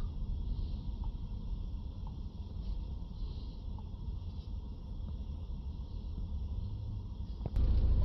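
Ford Transit diesel engine idling, heard as a steady low rumble from inside the cab, with a few faint taps. Near the end the rumble suddenly gets louder.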